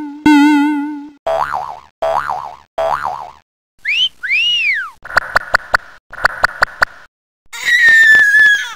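A string of cartoon comedy sound effects: a wavering tone, three springy boings, two rising-and-falling whistles, two quick runs of ticks about six a second, and a falling whistle near the end.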